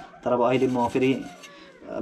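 A man's voice for about the first second, mumbled with no clear words, then a quieter stretch of faint rubbing as his hands work at something on the kitchen floor.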